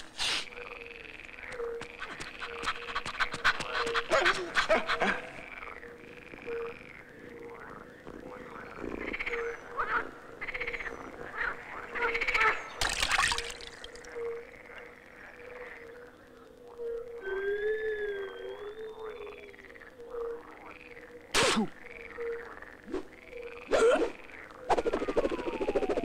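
Frogs croaking in a chorus of repeated short calls overlapping one another, with a brief wavering whistle partway through and a few sharp cracks midway and near the end.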